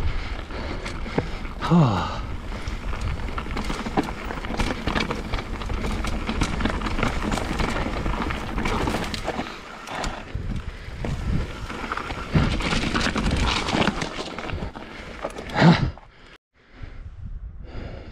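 Mountain bike riding fast over a rough dirt singletrack: steady tyre noise on dirt and stones with the bike rattling and knocking over bumps, and a rider's sigh about two seconds in. A loud knock comes near the end, and then the sound drops away briefly.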